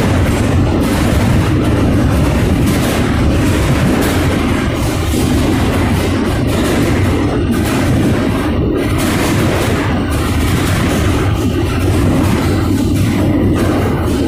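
Boxcar rolling on rough track, heard from inside the car: a loud continuous rumble with rattling and knocking from the car body and wheels.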